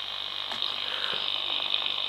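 Quansheng UV-5R Plus handheld receiving 20-metre HF in single sideband, its speaker putting out a steady hiss of band noise with no clear station.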